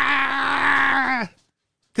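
A man's drawn-out "aaah!" cry held on one steady note: a mock shriek of shock at a film's twist. It breaks off about a second in, and dead silence follows.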